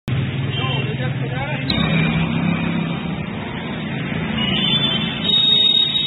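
Street traffic: a motor vehicle's engine running steadily with road noise, and indistinct voices in the background. A high steady tone comes in near the end.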